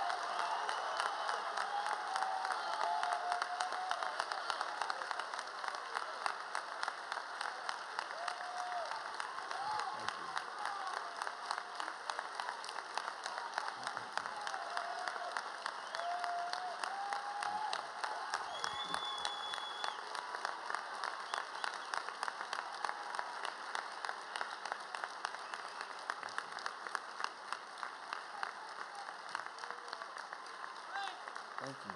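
A large audience giving a standing ovation: dense, sustained applause with voices calling out over it, easing slightly toward the end.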